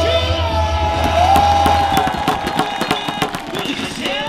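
Baseball cheer chant: cheer music with a bass beat through the stadium PA and a long note held on a microphone, with the crowd cheering. About two seconds in the beat stops and a dense run of sharp claps follows, from fans' hands and inflatable thundersticks.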